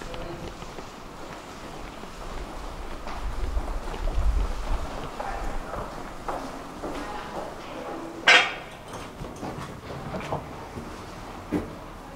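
Footsteps on paving in a concrete undercroft, with a low rumble for a couple of seconds about three seconds in. A single short, loud, hissing burst comes just after eight seconds.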